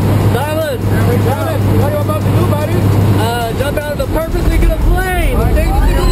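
Steady drone of a small jump plane's engine and propeller, heard inside the cabin in flight, with a man talking and shouting excitedly over it.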